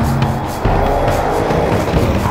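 Background music with a steady beat, mixed over the Audi RS 7's twin-turbo V8 engine accelerating, its pitch rising from about half a second in.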